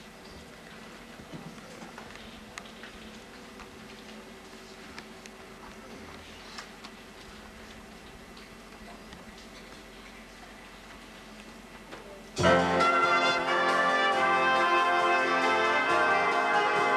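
A quiet stretch of room noise with a few faint clicks, then, about twelve seconds in, a jazz big band comes in loudly together, its brass section playing the opening of a slight up-tempo ballad.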